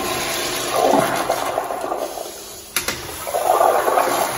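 American Standard Afwall toilet flushing through its flushometer valve at boosted water pressure: loud rushing water swirling in the bowl, swelling twice. A short sharp click comes a little under three seconds in.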